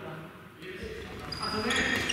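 Sports shoes squeaking sharply on a wooden gym floor during a badminton rally, starting past the middle. A racket strikes the shuttlecock once near the end.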